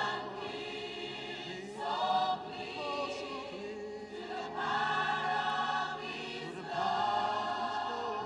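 Choir singing a gospel hymn, with long held notes that swell and fade in phrases about every two seconds.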